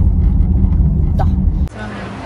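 Steady low rumble of a car's road and engine noise heard inside the cabin while driving, cutting off suddenly near the end.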